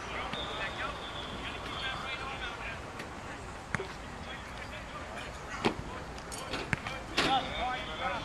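Football practice field sounds: distant voices calling out across the field, with a few sharp thuds in the second half, like footballs being caught or hitting the turf.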